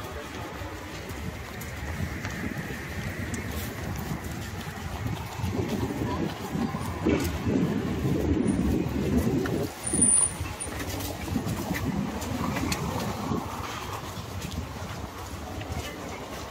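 Outdoor street ambience recorded while walking: a steady low background rumble with indistinct voices of passers-by, louder between about five and ten seconds in.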